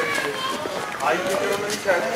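Outdoor chatter of several overlapping voices, high-pitched and without clear words.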